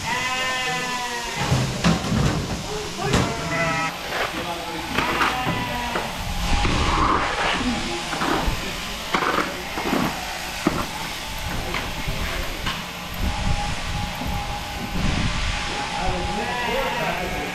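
Sheep bleating several times, with a long bleat right at the start and shorter ones a few seconds in, over the clatter and background voices of a busy shearing shed.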